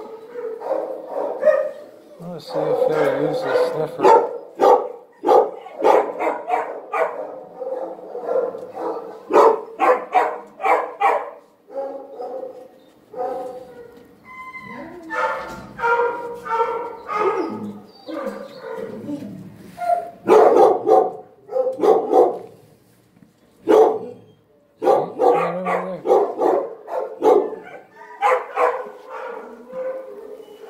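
Dogs barking in animal-shelter kennels: many short barks in quick runs, with brief lulls twice.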